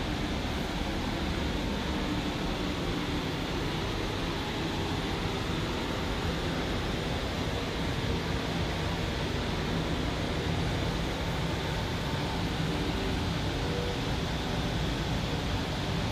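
Steady indoor room tone: an even hiss and low hum, such as a shop's air conditioning, with no distinct events.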